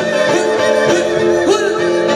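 Live Andean folk band playing: strummed acoustic strings and keyboard in a steady rhythm, with a voice singing over them.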